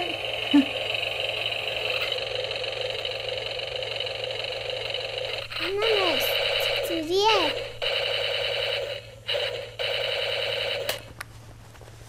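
A steady electronic-sounding buzzing tone, broken by short gaps about five and a half, eight, nine and nearly ten seconds in, and cutting off about eleven seconds in. A few short rising-then-falling pitched calls sound over it near the start and again around six and seven seconds in.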